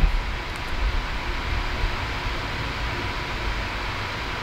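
Steady hiss of background noise with no distinct events.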